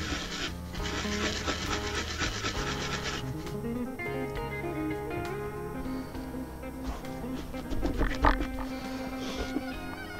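Brisk rubbing and scrubbing of a TV circuit board wet with isopropyl alcohol, cleaning off old solder flux, for about the first three seconds. After that, background music plays, with a single thump about two seconds before the end.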